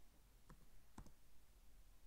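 Two faint clicks about half a second apart over near silence: keystrokes on a computer keyboard.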